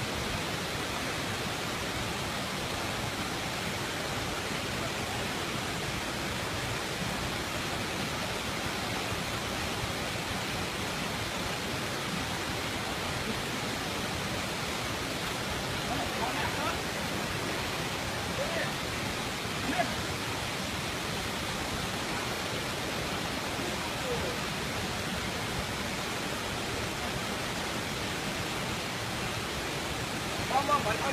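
Steady rush of flowing water, with faint voices briefly heard about halfway through.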